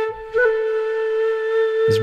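Sampled dongxiao, a Chinese end-blown bamboo flute, from the Ample Sound Ample China Dongxiao virtual instrument, holding one steady note. The note dips briefly just after the start and picks up again with a small pitch blip before half a second in.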